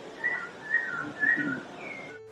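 A whistled two-note call repeated three times, each a high note dropping to a slightly lower one, with a fourth call starting near the end, over steady background noise.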